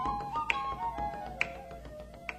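Instrumental folk tune on a flute-like wind instrument, its melody stepping downward and fading out. Two sharp snaps sound about a second apart.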